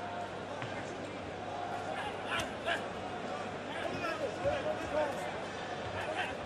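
Boxing-arena crowd noise, a steady murmur with scattered shouts, and a couple of sharp smacks about two and a half seconds in from gloved punches landing at close range in a clinch.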